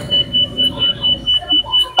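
Electronic beeper sounding a rapid run of short, high-pitched beeps on one steady note, about four or five a second.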